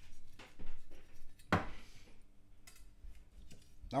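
Kitchen knife cutting around the edge of a baked moussaka in a ceramic dish: short scrapes and small knocks of the blade against the dish, the loudest a sharp knock about one and a half seconds in.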